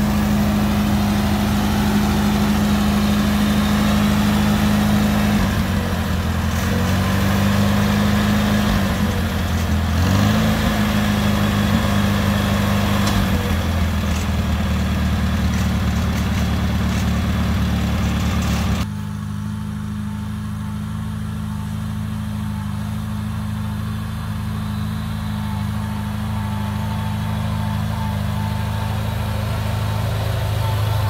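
1950 Farmall Cub's four-cylinder flathead engine running at idle, its speed dipping and rising a few times, with a brief rise about ten seconds in. A little past halfway the sound cuts abruptly to a quieter, steady run.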